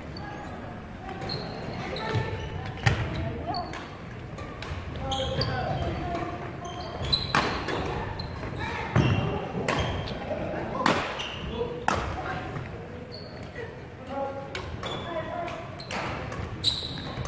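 Badminton rackets striking a shuttlecock during a doubles rally, several sharp hits a second or more apart, echoing in a large gym hall.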